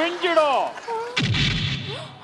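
A woman's voice calls out in drawn-out, gliding tones. A little over a second in comes a sudden deep boom with a short rumbling tail, like a blast sound effect.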